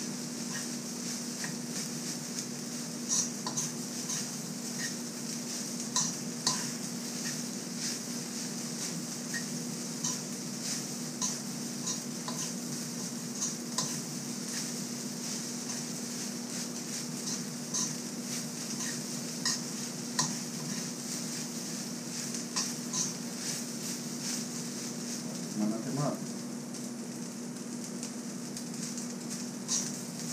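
Metal spoon stirring rice in a metal wok, knocking and scraping against the pan at uneven intervals, every second or two, over a steady hum and hiss.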